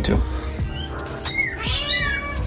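A cat meowing: a few high-pitched cries, rising and falling, in the second half.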